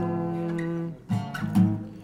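Acoustic guitar strummed: a chord rings for about a second, then a few quick strums that fade out near the end.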